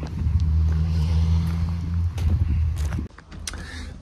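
A car engine idling: a steady low hum that wavers a little and cuts off about three seconds in.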